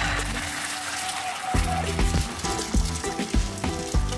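An egg frying in hot oil in a small pan: a steady sizzle, heard under background music with a regular beat.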